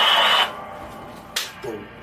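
A crowd-cheering sound effect that stops abruptly about half a second in. It is followed by a quiet stretch with one sharp click.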